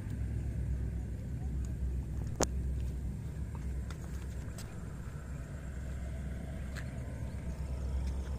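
Steady low outdoor rumble, with one sharp click about two and a half seconds in.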